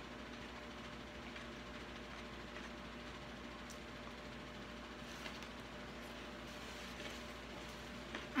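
Quiet steady background hum of room tone, with a couple of faint short clicks.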